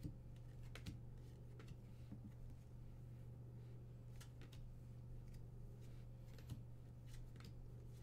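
Faint, irregular flicks and clicks of trading cards being slid one at a time off a stack in the hands, over a steady low electrical hum.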